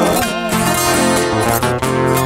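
Viola caipira and acoustic guitar strumming and picking an instrumental passage of a moda de viola between sung lines.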